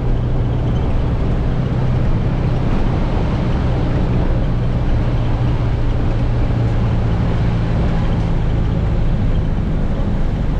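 Steady engine hum and road noise heard inside a moving city bus.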